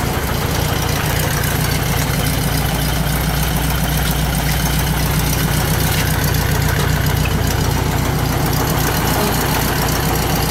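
1973 Volkswagen Kombi's air-cooled flat-four engine idling steadily.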